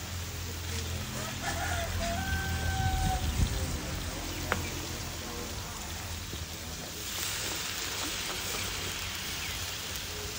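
Sauce sizzling and bubbling in a steel wok over a wood fire, a steady hiss, with a rooster crowing once about two seconds in. A single sharp click comes about halfway through.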